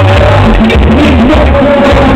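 Live band music, played loud over a PA, with a bass guitar line and a wavering melody on top.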